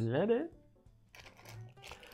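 Faint rustling and light clicks as a small plastic bag of wooden game pawns is handled and lifted out of a cardboard box insert.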